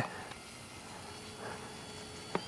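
Faint steady hum of an electric radio-controlled P-47 warbird model's motor and propeller in flight, under a background hiss.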